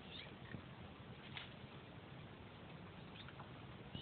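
A few faint, brief high chirps over a quiet, steady background hiss.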